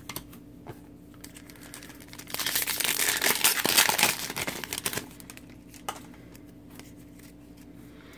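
Foil wrapper of an Upper Deck Champs hockey card pack crinkling and tearing as it is ripped open. The burst starts about two seconds in and lasts nearly three seconds.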